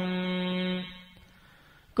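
A chanting voice holds the last syllable of a verse on one steady note, which fades out about a second in; a short pause follows, and the next chanted line starts at the very end.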